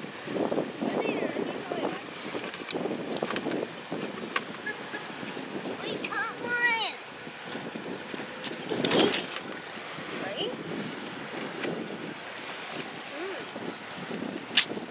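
Wind on the microphone and shoreline ambience with indistinct voices. A short, high descending cry comes about six seconds in.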